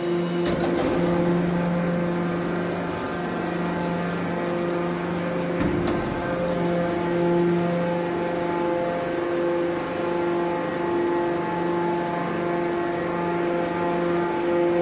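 Hydraulic scrap metal baler's power unit running, its pump and motor giving a steady pitched hum.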